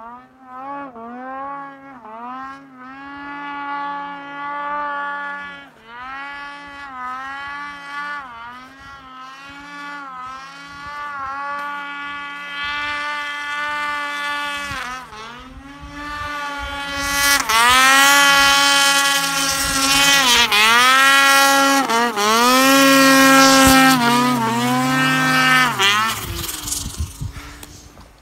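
Ski-Doo XM snowmobile's two-stroke engine under hard throttle climbing a steep snow chute, its revs repeatedly dipping and rising again every second or two. It grows louder as the sled comes up the slope, is loudest in the second half, and falls away near the end.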